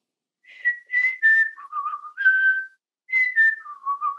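A person whistling a bird call as a melody: a short phrase of notes that step down in pitch, then rise to a longer final note. The phrase is whistled again starting about three seconds in.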